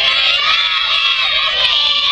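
Young girl cheerleaders yelling a cheer together in unison: one long, high-pitched drawn-out shout from many children's voices.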